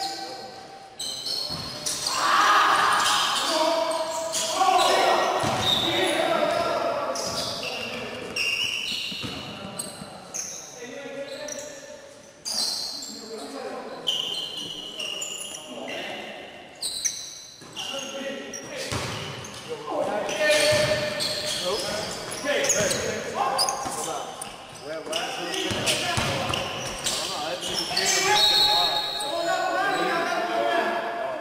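Live basketball game sound in a reverberant gym: the ball bouncing on the court again and again, with players' indistinct shouting and calls.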